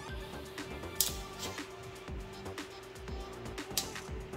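Background music with a steady held tone over a low, regular beat.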